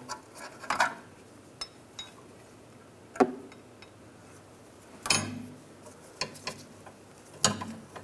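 Scattered metal clicks and knocks as a removed brake caliper is handled and hung from the coil spring on a wire brake caliper hanger. There is a short metallic ping about two seconds in, and louder knocks about three and five seconds in.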